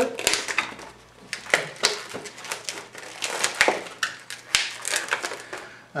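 Latex modelling balloons squeaking and creaking as hands twist them into bubbles, an irregular run of sharp rubbery squeaks and clicks.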